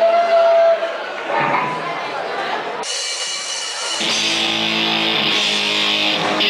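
A live ska band starting a song: after a few seconds of voices in the room, amplified electric guitar comes in suddenly about three seconds in, and the sound fills out with lower notes a second later.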